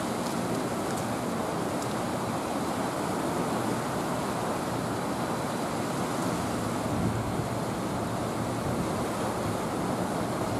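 Steady rushing of water flowing below a hydroelectric dam, an even roar at a constant level.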